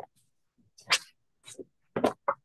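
Short animal cries, probably a dog's: four brief bursts spaced about half a second apart, picked up through a video-call microphone.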